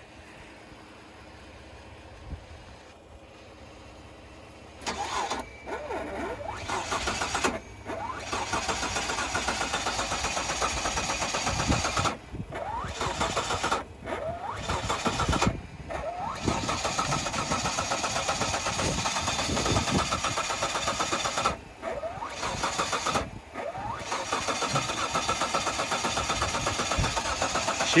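Starter motor cranking a jump-started SUV's engine in long runs from about five seconds in, with several short pauses between attempts. The engine tries to catch but does not start.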